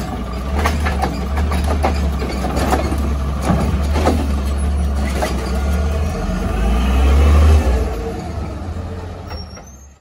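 Heil Rapid Rail automated side-loader garbage truck emptying a recycling cart: recyclables clatter into the hopper over the diesel engine's steady idle. The engine then revs up, loudest about seven and a half seconds in, and the sound fades away near the end.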